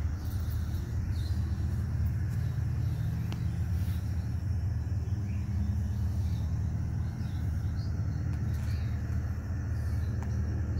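Steady low rumble throughout, with a few faint, short high-pitched chirps now and then.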